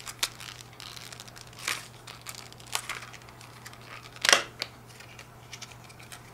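Stiff clear plastic packaging case crinkling and clicking as it is pried open by hand, in irregular sharp crackles with the loudest about four seconds in.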